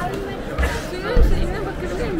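Passers-by talking on a busy pavement, several voices overlapping, with a low bump just past a second in.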